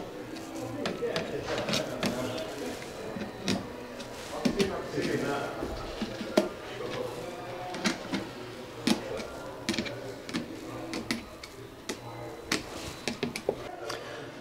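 Light clicks and taps as the plastic tip of a handheld voltage tester pen is touched against screws on electrical meter-board equipment, irregular and many times over, with a low background murmur.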